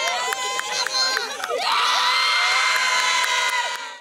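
A group of women cheering and shouting together in celebration, breaking into one long, loud group shout about one and a half seconds in that fades out at the very end.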